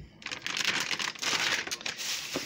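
Plastic food packaging crinkling and rustling as it is handled, beginning a moment in as a dense, continuous crackle.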